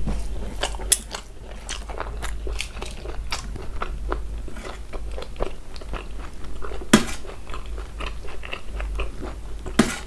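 Close-up chewing and wet mouth sounds of someone eating mutton curry and rice by hand, with a run of small smacks and clicks. Sharp metal clinks stand out about a second in and, louder, about seven seconds in and just before the end, as a metal ladle knocks the steel curry bowl.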